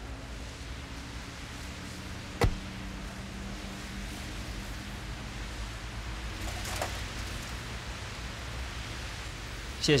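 A bicycle being taken off a rack on a taxi's open trunk: one sharp metallic clack about two and a half seconds in and a fainter rattle near seven seconds, over a steady low hum and hiss.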